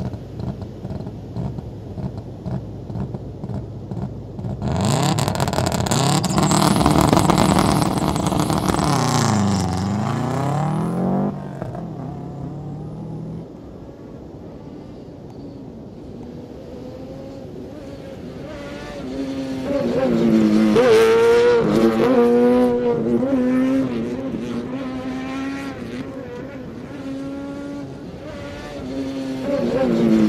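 Traxxas Slash 2WD RC truck's electric motor and drivetrain whining as it is driven hard, the pitch rising and falling with the throttle. There are two loud runs with a quieter stretch between them.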